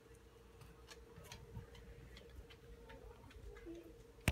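Near silence: room tone with a faint steady hum and a scattering of light, irregular ticks.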